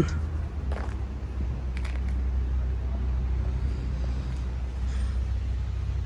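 Steady low rumble of outdoor urban background noise, with a few faint knocks about a second and two seconds in.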